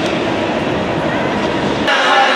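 Loud steady open-air stadium ambience with a deep rumble, cut off abruptly near the end.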